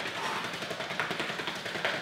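Rapid footfalls of two people doing quick feet, stepping fast in place in sneakers on a rubber gym floor: a quick, even patter of light taps.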